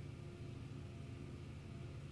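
Quiet room tone with a steady low hum and no distinct sound.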